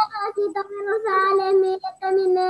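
A child's voice in long, held sing-song notes.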